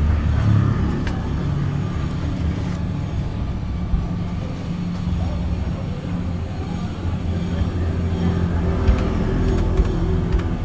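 Steady low drone of a motor vehicle engine running, with a few light clicks scattered through it.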